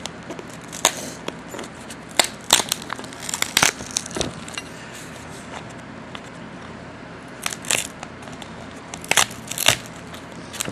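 Packing material crinkling and crackling as it is handled and pulled apart, in irregular sharp crackles with a quieter spell midway.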